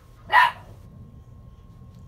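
A boxer dog barks once, short and sharp, about half a second in, during rough play between two boxers.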